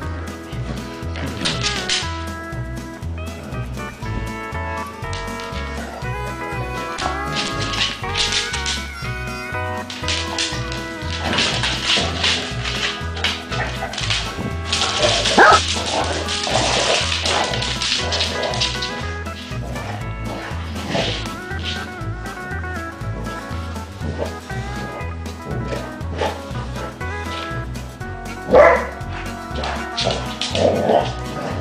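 Background music with a steady beat over basset hounds barking in play, with one sharp bark about halfway through and another near the end.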